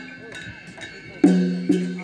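Struck percussion beating time for a folk dance: a short lull, then two ringing strokes about half a second apart, each with a pitched tone that fades away.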